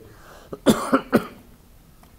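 A man coughing into his fist: a short run of sharp coughs starting about half a second in, the loudest near the start of the run.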